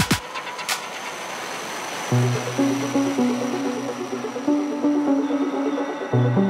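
Melodic techno going into a breakdown: the kick drum drops out at the start, leaving a noisy synth wash with a single sharp hit a little under a second in. About two seconds in, a stepping bass synth melody comes in.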